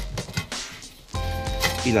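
Background music, dropping low for a moment near the middle and coming back with a bass line, with a single spoken word near the end.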